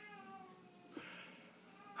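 A faint, brief pitched sound with overtones, sliding slightly down in pitch for under a second, then a soft click about a second in.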